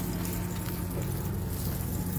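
Steady low mechanical hum with a constant low tone: the background machinery drone of a large underground parking garage.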